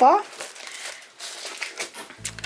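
Plastic cellophane wrapping on packs of craft paper crinkling and rustling as they are handled and shifted in a box, a faint, uneven rustle.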